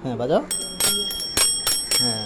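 A kids' bicycle's handlebar dome bell rung about six times in quick succession, each sharp ding ringing on briefly, starting about half a second in.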